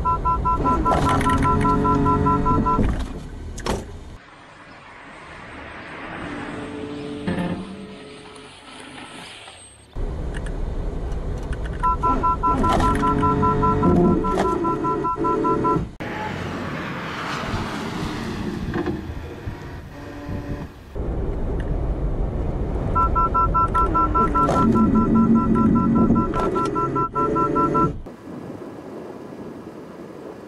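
Honda N-BOX collision warning alarm beeping in rapid two-note pulses, three times, each burst lasting about two to three seconds, over the rumble of the car driving at about 60 km/h. It is the car's warning that an obstacle lies ahead, sounding as its automatic emergency braking engages.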